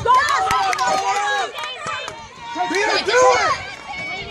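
Overlapping shouts and calls from sideline spectators and players at a soccer game, in two bursts with a lull between them.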